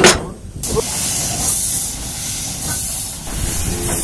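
Steady steam hiss from the Stephenson class 3C steam locomotive No. 2037, starting about half a second in after a sharp click.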